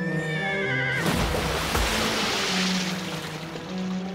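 Sustained low string music throughout. At the start a horse whinnies briefly in a wavering, rising call, then about a second in a diving horse plunges into the sea with a long splash that lasts about two seconds.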